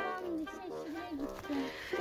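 A quieter voice, drawn out and wavering in pitch.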